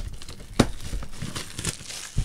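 Plastic shrink wrap crinkling and tearing as it is pulled off a sealed trading card box, with a sharp snap about half a second in.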